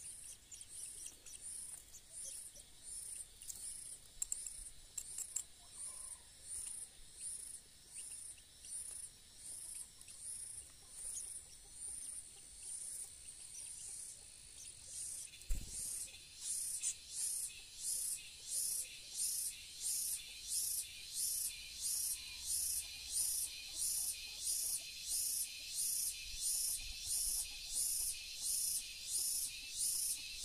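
Long-tailed shrike nestlings begging with thin, high chirps, repeated evenly and growing louder and quicker, at about two a second, from about halfway through. Just before the chirps grow louder comes a single dull knock.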